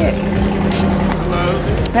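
A vehicle engine runs as a steady low hum that fades out about halfway through, under brief indistinct voices.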